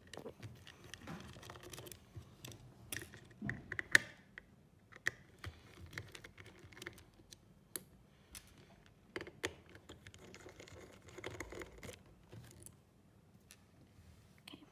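Small screwdriver working out the screws that hold a hard disk drive's spindle motor: scattered light clicks and scrapes, with one sharper click about four seconds in.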